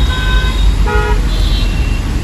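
Vehicle horns honking in street traffic: several short, steady horn tones of different pitches over a continuous low traffic rumble.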